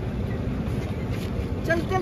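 Steady low rumble of a running vehicle engine, with a small child's voice starting to cry out near the end.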